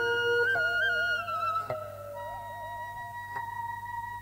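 Instrumental interlude: a single melody line of long held notes with a wavering vibrato, getting softer about halfway through.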